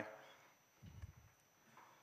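Near silence: room tone, with a faint low thump about a second in.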